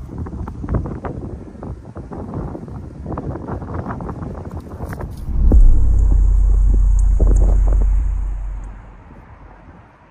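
Wind buffeting the microphone in gusts. About five seconds in, a loud low rumble starts suddenly with a faint high whine over it, holds for about three seconds, then fades away.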